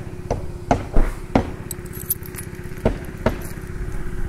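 Roofers at work on a house roof under replacement: about half a dozen sharp knocks of tools striking the roof deck, four in the first second and a half and two more near the end, over a steady low rumble.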